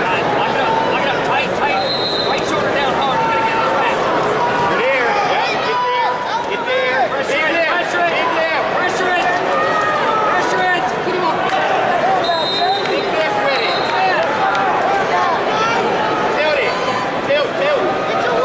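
Many voices shouting and calling out over one another across a large arena: spectators and matside coaches yelling during a wrestling bout.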